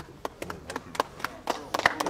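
A few people clapping by hand, in scattered, irregular claps.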